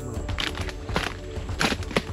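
A machete chopping into a soft, rotten log: about four strikes, roughly half a second apart, over background music.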